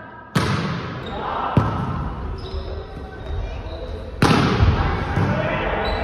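Sharp smacks of a volleyball being hit during a rally, echoing in a gymnasium: one about a third of a second in, another about a second and a half in, and the loudest about four seconds in. Players shout between the hits.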